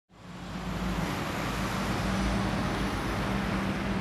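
Outdoor street ambience: steady road traffic noise, a continuous hiss with a low hum and rumble, fading in over the first second.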